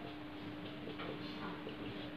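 Marker pen writing on a whiteboard: faint short ticks and squeaks of the pen strokes as letters are written, over a steady low hum.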